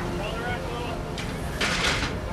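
Deck noise aboard a crab boat: the steady low rumble of the vessel running, with faint distant voices and a short burst of hiss near the end.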